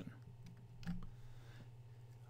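Steady low hum of room tone, with one faint click a little under a second in, as a presentation slide is advanced to show its next bullet point.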